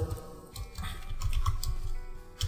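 Computer keyboard typing: a quick run of key clicks starting about half a second in.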